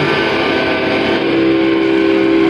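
Distorted electric guitars ringing out on a held chord as a live hardcore song ends, with the drums stopped. A single steady tone swells up about halfway through.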